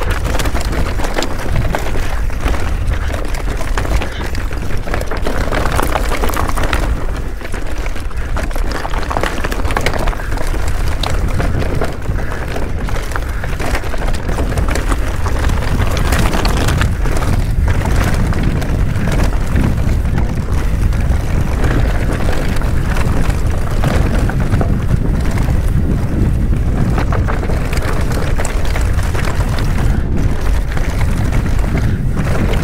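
Wind buffeting an action camera's microphone as a mountain bike descends a rocky dirt singletrack at speed, a steady rumble mixed with tyre noise and brief knocks and rattles from the bike over the rough trail.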